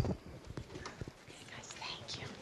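Handling noise from a handheld microphone as it is passed from one person to another: a few light knocks and rubs on the mic, with faint voices in the background.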